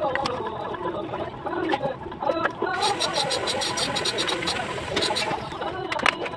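Bricklaying on site: scattered sharp taps and clicks of a steel trowel and brick hammer on fired clay bricks and mortar. For about two seconds in the middle a fast, high rattle joins in.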